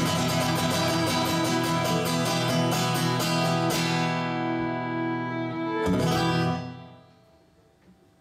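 Acoustic guitar strummed with a fiddle playing over it at the end of a song. The strumming stops a little under four seconds in, then one last chord is struck near six seconds in and rings out, fading to near silence.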